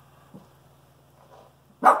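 A puppy gives a single short, sharp bark near the end, on command.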